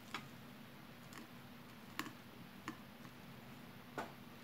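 Quiet sounds of eating rice by hand: about five short, sharp clicks, roughly one a second, the loudest about two seconds in, over a low steady hum.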